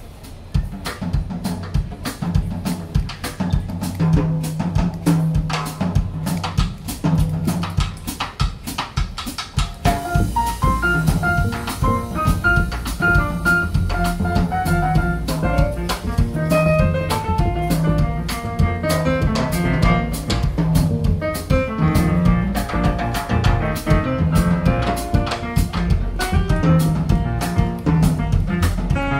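A live jazz band starting a song: drum kit and upright bass open it, and higher melodic lines join about ten seconds in.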